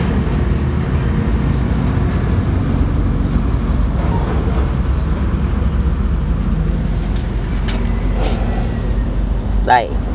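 A loud, steady low hum of a motor running close by, with a few faint clicks about seven to eight seconds in.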